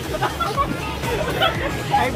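Babble of a small group's voices talking and laughing together, with music playing behind them.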